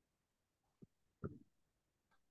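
Near silence, broken by two brief faint sounds about a second in, the second a little stronger.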